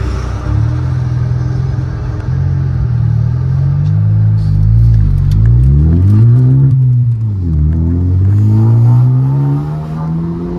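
Ford Focus engine heard from inside the cabin, accelerating in a manual gear. Its pitch climbs, drops sharply about seven seconds in as a gear is changed, then climbs again.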